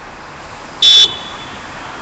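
A single short, high-pitched vehicle horn beep about a second in, lasting about a quarter second, over steady street traffic noise.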